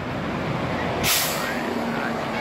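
Road traffic running steadily, with a heavy vehicle's air brake letting out a short hiss about a second in.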